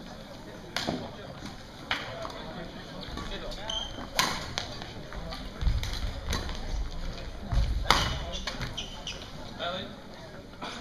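Badminton rally: sharp racket strikes on the shuttlecock every second or few, with heavy footfalls of players lunging on the court floor, in a large echoing sports hall.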